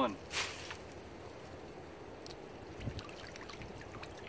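Water splashing and trickling as a soaked muskrat is lifted out of a submerged wire colony trap, with one brief splash about half a second in, then a low trickle.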